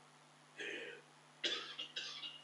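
Whiteboard marker scraping across the board in short strokes as a word is written: one stroke about half a second in, then a quick run of strokes in the second half, one with a faint squeak.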